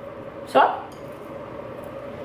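A spoon scooping hummus onto a ceramic plate, with soft scrapes and a few faint clicks, over a steady faint hum.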